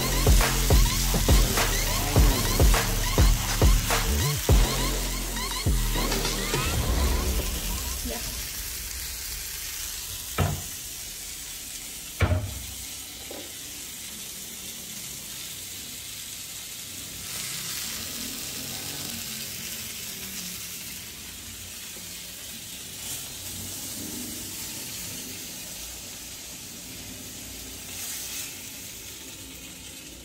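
Electronic music with a steady beat that fades out over the first several seconds, then chicken sizzling in a cast-iron skillet, with two sharp knocks about ten and twelve seconds in.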